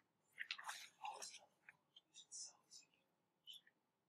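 Faint rustling of a paper page being turned over, with a few soft ticks.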